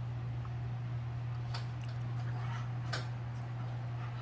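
A baby eating plain cooked rice by hand, with two faint mouth smacks about one and a half and three seconds in, over a steady low hum.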